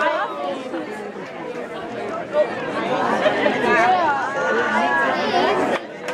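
Indistinct chatter: several people talking at once, voices overlapping, cut off abruptly just before the end.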